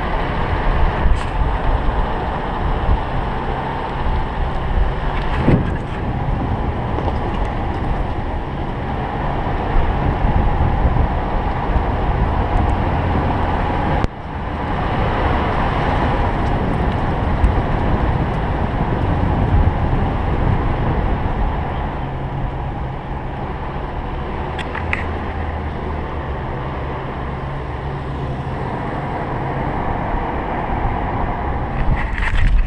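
A car driving along a rough dirt road: steady engine and tyre rumble picked up by a camera mounted on the outside of the car, with a brief drop about halfway through.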